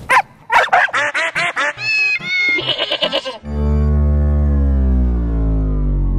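Cartoon dogs yipping in a quick run of short, rising-and-falling barks. About three and a half seconds in, a long low note takes over and slowly falls in pitch.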